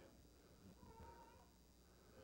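Near silence: room tone in a pause, with one brief faint high tone about a second in.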